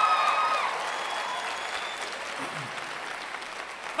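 A held sung note ends under a second in, and the audience applauds, the applause slowly fading.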